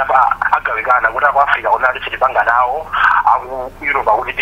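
Continuous speech in a narrow, telephone-like sound that lacks the high end.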